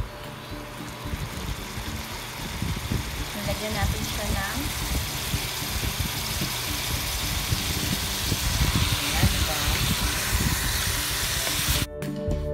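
Chicken pieces sizzling in hot oil in a frying pan, the sizzle growing louder as the pan heats, under background music.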